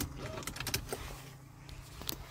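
Several light, sharp clicks and taps in the first second, over a low steady hum that fades out within the first half second.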